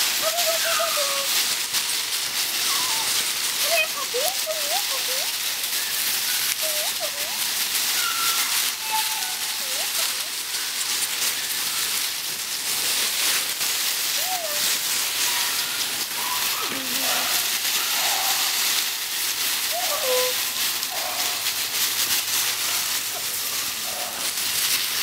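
Dry fallen leaves rustling and crackling continuously as beagle puppies scramble through a deep pile of them, with short squeaky puppy whines and yelps, rising and falling in pitch, scattered through.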